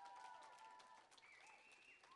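Faint, scattered audience applause, dying away, with a faint steady high tone held over it.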